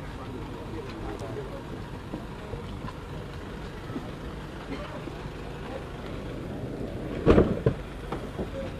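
A van's sliding side door slammed shut about seven seconds in: one loud thud with a smaller knock just after it, over a background murmur of voices.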